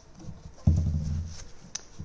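Paint brush scrubbing in small circles over carved detail on a painted wooden end table, a low rubbing rumble that starts suddenly about two-thirds of a second in and lasts about a second.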